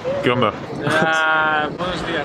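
A person's voice: a few quick syllables, then one long, steady, held vocal note lasting under a second.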